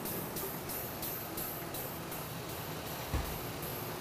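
Air-powered fill pump of a BG CT4 coolant transfusion machine running, a steady hiss pulsing about three times a second as it pumps new coolant into the overflow reservoir.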